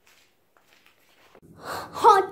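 Near silence, then about a second and a half in, a short breathy rush like a quick intake of breath.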